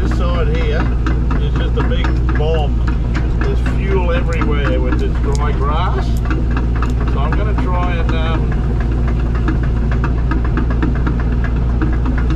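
Excavator's diesel engine running steadily, heard from inside the cab. Wavering higher-pitched tones come and go over the engine.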